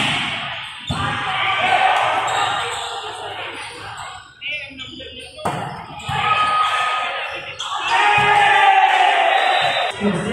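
A basketball bouncing on a hard indoor court, a few sharp echoing bounces about a second and a few seconds apart, under people's voices in a large hall.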